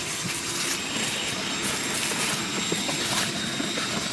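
Shop vac running steadily, its hose nozzle sucking leaves and debris out of a car's battery-tray area, with a few small clicks as bits go up the hose.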